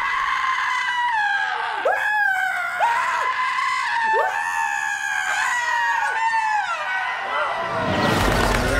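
A man screaming in fright: a run of long, high screams, each breaking off and starting again about once a second, stopping just before the end.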